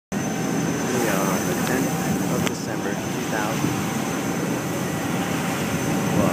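Steady engine rumble of the Staten Island Ferry under way, with other passengers talking in the background and a single click about two and a half seconds in.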